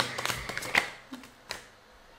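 Tarot cards being handled and shuffled: a few light clicks and rustles of card stock, getting quieter toward the end.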